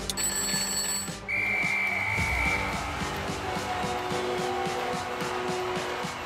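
Electronic background music with a steady beat. About a second in, a single held electronic beep sounds for about a second and a half: a timer buzzer marking the end of the quiz countdown.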